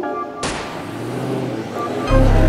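Background music for the first half-second, then a sudden rush of noise as the live sound of two race cars at the start line comes in, with a low steady engine note from about a second in as they sit staged before launch.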